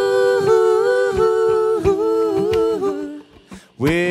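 Male and female voices singing a wordless two-part harmony a cappella, held notes moving together in parallel. They stop about three seconds in, and a rising note comes in near the end.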